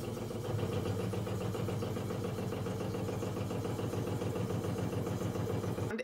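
A toilet refilling after a flush with a loud, steady hum. It is an abnormal noise from the plumbing.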